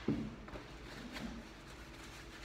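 A soft thump just after the start, then a faint tick and a light rustle, like small objects being handled close by.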